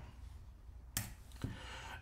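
A quiet pause holding a single sharp click about a second in, over faint room tone.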